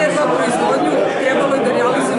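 Speech only: a woman talking into a handheld microphone, with chatter in the room behind.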